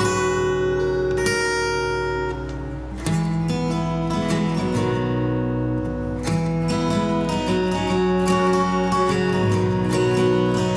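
Solo acoustic guitar played as an instrumental break, strummed and picked chords left ringing, with a new chord struck every second or two.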